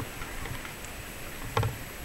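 Outdoor street ambience with a steady hiss and a few faint clicks, and one short, loud pitched sound about one and a half seconds in.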